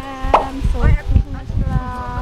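Women's voices talking with wind rumbling on the microphone, and one sharp pop about a third of a second in.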